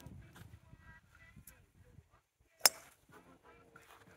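A driver's clubhead strikes a golf ball off the tee: a single sharp crack about two and a half seconds in. The ball is caught off the toe of the clubface.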